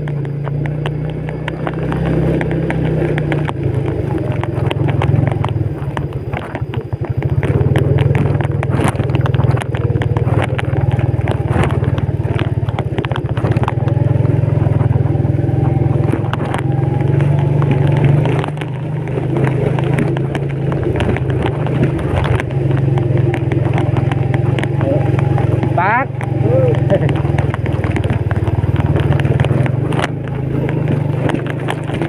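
Yamaha Vega underbone motorcycle's single-cylinder four-stroke engine running steadily while carrying a load along a rough dirt track, with many small knocks and rattles from the bumps.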